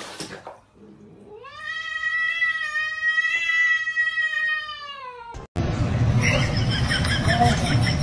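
A cat's long drawn-out yowl lasting about four seconds, rising in pitch at the start, holding, then falling away at the end. It breaks off suddenly into a louder, noisier stretch.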